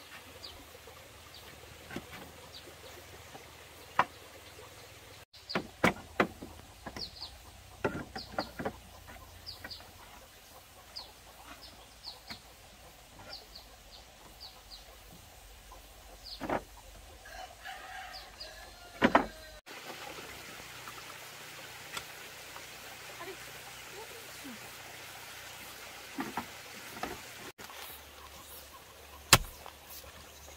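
Scattered sharp knocks and taps of bamboo poles and hand tools being handled, with short high bird chirps and chickens clucking in the background.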